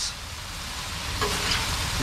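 Kung Pao chicken sizzling on a hot steel griddle top as a metal spatula scoops and pushes it, a steady hiss that grows slowly louder.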